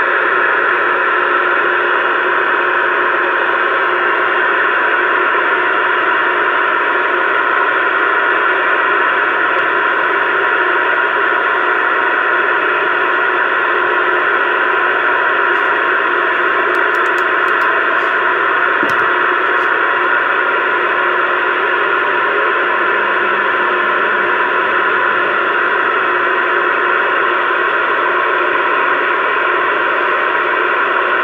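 CB radio receiver hissing with steady, loud static from its speaker, no voices coming through.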